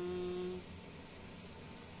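A person's voice holding one steady hummed note for about half a second, then quiet room tone with a faint low hum.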